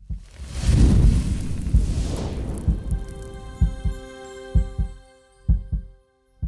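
Channel logo sting: a swelling whoosh over a deep rumble settles into a sustained synth chord, with deep, heartbeat-like thuds roughly once a second underneath.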